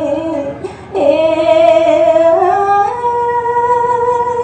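Khmer smot: a woman's solo voice chanting a mournful lament, holding long wavering notes. After a short breath about a second in, the melody climbs in steps and settles on a long held note.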